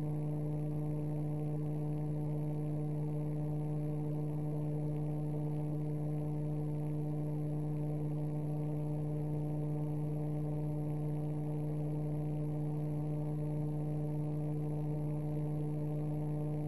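Steady electrical hum: a constant low tone with several higher overtones, unchanging in level.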